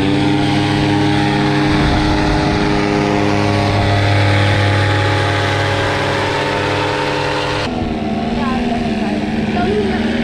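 Paramotor engine and propeller held at full power for a tandem takeoff, a loud, steady drone. About eight seconds in, it switches abruptly to a lower, steady engine note.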